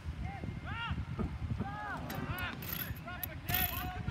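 Short shouted calls from players on the soccer field, heard at a distance over a low outdoor rumble.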